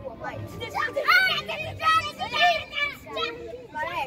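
Children's voices: high-pitched young voices talking and calling out over one another.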